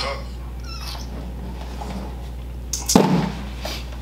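Steady low electrical hum of room tone, with one short loud vocal sound, a grunt- or bark-like utterance, about three seconds in.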